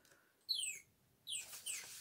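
A small bird chirping faintly: about three short chirps that fall in pitch, the first about half a second in.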